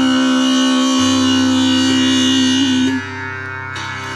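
Tanpura drone, its strings plucked in turn into a steady ring full of buzzing overtones, under a long held sung note. The sung note wavers and ends about three seconds in, and the drone goes on alone, a little quieter.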